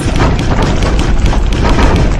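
Produced explosion-and-shatter sound effect for a logo reveal: a sudden loud blast, followed by dense crackling and rumbling with many small cracks like flying debris.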